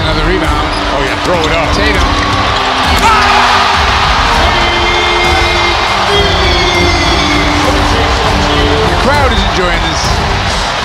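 Basketball game audio: a ball dribbling on a hardwood court and sneakers squeaking, over arena crowd noise that swells about three seconds in. Background music plays underneath.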